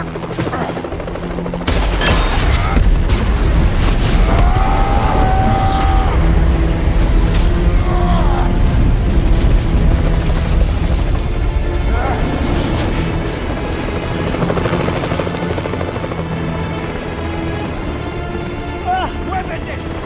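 Action-film soundtrack mix: a dramatic music score over a hovering helicopter's rotor and engine, with booms and sudden hits. The mix jumps louder about two seconds in.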